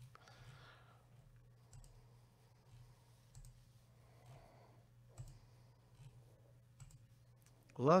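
Faint computer mouse button clicks, one about every two seconds, over a low steady hum.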